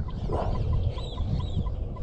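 Birds calling: a short note repeated about four or five times a second, with two higher arched chirps about a second in, over a low rumble.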